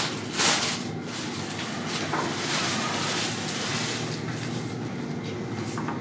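Cut flower stems and leaves rustling and brushing as they are handled and set into a vase: a short sharp rustle about half a second in and a longer soft one in the middle, over a steady low hum.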